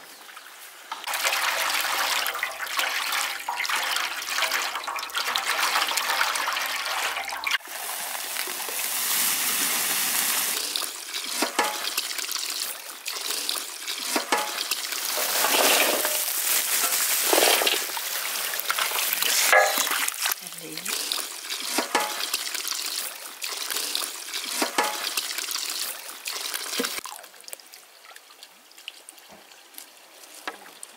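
Water from a garden hose pouring into a metal basin full of medlars, a steady gush that splashes over the fruit in several swells. Near the end it gives way to softer, scattered splashes as the fruit is washed by hand.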